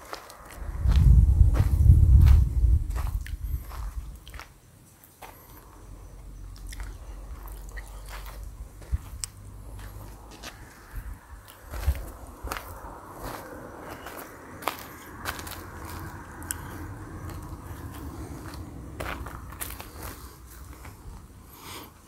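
Handling noise from a phone camera being moved and set in place: low rubbing and rumbling, loudest in the first few seconds, then a faint low rumble with scattered light clicks, scrapes and crunches.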